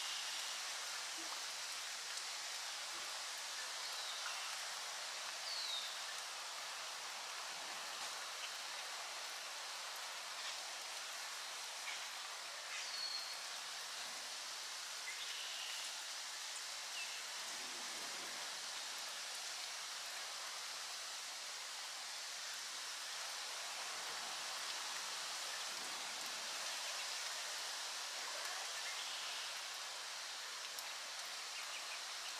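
Steady rain falling on leaves and water, an even hiss, with a few short bird chirps scattered through it.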